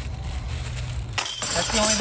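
A putted flying disc strikes the hanging steel chains of a Dynamic Discs disc golf basket about a second in. The chains jingle sharply and keep rattling as the disc drops into the basket: a made putt.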